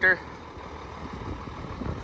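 1994 Case IH 7220 Magnum tractor's six-cylinder turbo diesel idling steadily, a low even rumble.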